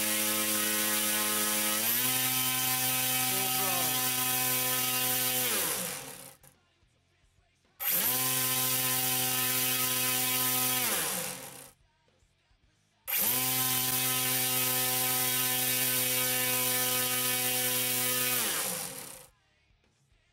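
A DualSky XM4010 brushless outrunner motor swinging an 11-inch propeller on a bench test, running at high throttle with a steady whine. It steps up in pitch about two seconds in as the throttle rises, drawing about 16–17 amps, then winds down with falling pitch. The whine twice comes back suddenly at speed and winds down again, the last time to silence near the end.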